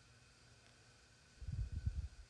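Near silence, then about a second and a half in, a few low, muffled bumps: handling noise from hands holding a small plastic dropper bottle over a glass sample vial.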